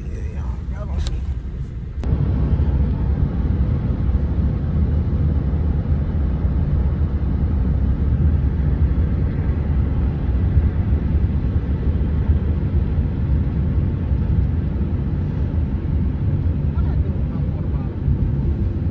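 Steady low rumble of wind and road noise on a phone microphone from a moving car, starting abruptly about two seconds in.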